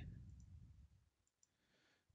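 Near silence with a few faint computer mouse clicks, in pairs around half a second and a second and a half in, and a faint low rumble that fades out within the first second.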